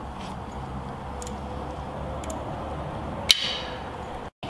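A low steady hum with a few faint ticks about a second apart, and one sharper metallic click with a brief ring near the end.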